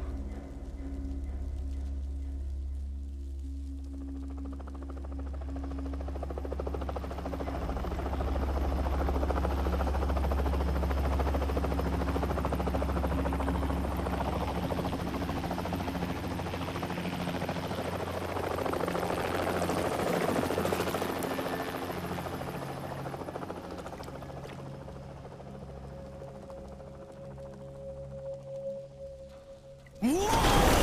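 Helicopter rotor noise over a low, sustained music drone. The rotor noise builds from a few seconds in, is loudest through the middle, then fades away near the end.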